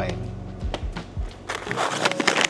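Coffee bags being handled on a table: a few soft knocks as they are set down, then bag crinkling near the end, over steady background music.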